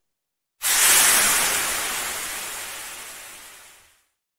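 A rushing-noise sound effect, like a hiss of air or smoke, for a logo reveal. It starts abruptly about half a second in and fades away over the next three seconds.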